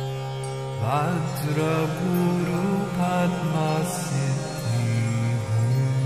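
Devotional mantra chanting over a steady drone; the chanting voice comes in about a second in, its pitch bending through the phrase.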